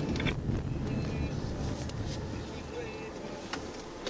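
Engine and road noise inside a moving police cruiser, a low rumble that fades gradually as the car eases off.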